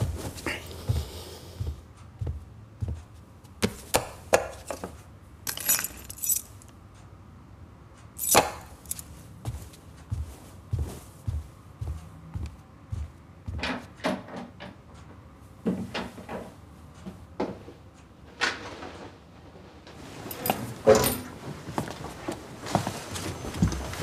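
Quiet handling sounds: a string of small clicks, knocks and short rustles, among them the jingle of a bunch of keys.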